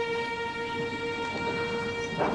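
A single held note, steady in pitch and level, sustained in a drama's background music score.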